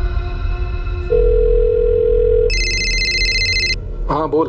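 A landline telephone dial tone sounds steadily in the handset for about a second and a half. It is followed straight away by a high, bright electronic ring lasting just over a second. A low background music drone runs underneath.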